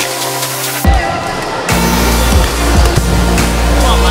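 Electronic background music with a heavy bass line: it shifts sharply about a second in, and a deep sustained bass comes in near the middle.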